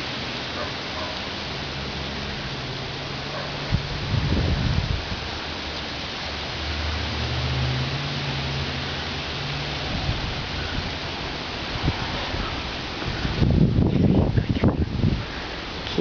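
Strong wind blowing, rushing through the tree's leaves and buffeting the microphone, with heavy gusts about four seconds in and again near the end.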